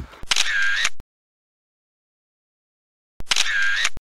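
Camera shutter sound effect, played twice about three seconds apart with total silence between.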